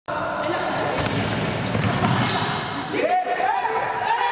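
A futsal ball being struck and bouncing on a wooden indoor court, with echoing hall noise and voices; there is a sharp kick about a second in. About three seconds in, a voice rises into a long held shout as a goal is scored.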